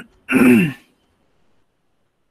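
A man clears his throat once, a short voiced rasp falling in pitch, just after a faint click.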